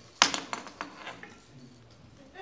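A sharp knock, then a quick run of lighter clicks that die away after about a second.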